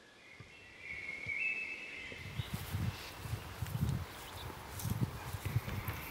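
Footsteps on dry grass, a series of soft irregular thuds with light rustling, in a field. They are preceded by a faint high steady tone lasting about a second.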